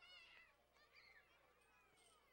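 Near silence, with faint, short high-pitched calls in the background.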